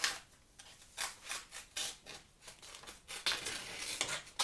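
A freshly sharpened blade slicing into a sheet of paper, a test of the edge. It makes several short papery cutting strokes, about one a second.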